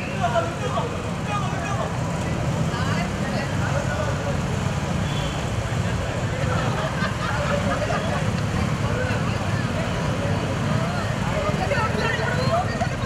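Several small commuter motorcycles running at low throttle, a steady low engine hum, as the riders creep forward in a slow race. Onlookers chatter over it.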